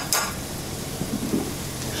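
Diced onion and garlic sizzling steadily in melted butter in a stainless steel pot, with a heap of flour just added for the sauce's roux. Two short knocks sound right at the start.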